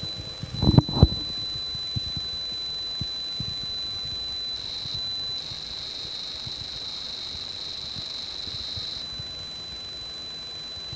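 Small speaker in a Radio Shack TRS-80 Pocket Computer cassette interface sounding the tape-save (CSAVE) tones: a steady high-pitched tone, then a warbling data burst from about halfway, with a short break, before the steady tone returns near the end. A couple of knocks about a second in.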